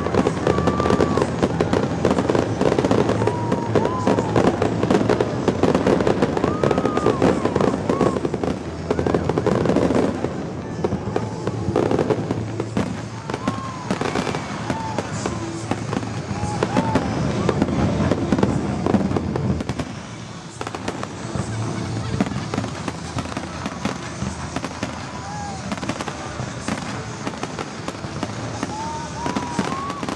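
A dense, rapid barrage of fireworks bursting, crackling and popping, heaviest in the first third and thinning out about two-thirds of the way through.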